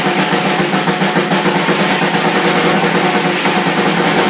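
An electric guitar and a Ludwig drum kit playing rock together: sustained guitar chords over a fast, even run of drum strokes, about seven a second.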